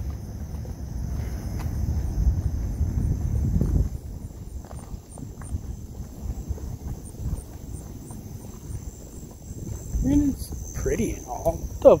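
Night insects, crickets or similar, singing in a steady high trill with a quicker pulsing chirp above it throughout. A low rumble fills the first four seconds, and a man's voice breaks in near the end.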